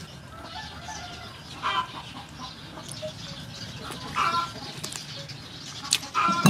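Chickens clucking in the background, with two short calls about two seconds in and about four seconds in.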